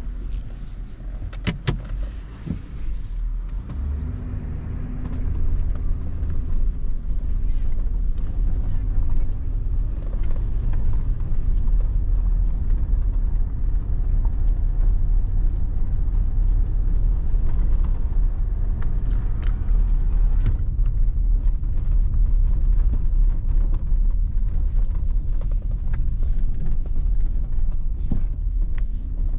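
Nissan Patrol's 5.6-litre petrol V8 and the drive heard from inside the cabin while driving: a steady low rumble that grows louder about four seconds in, with a few sharp clicks in the first few seconds.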